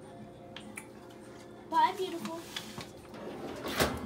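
A faint steady hum, a short voice about halfway through, then a sharp metal clank near the end as the oven door of an electric range is worked.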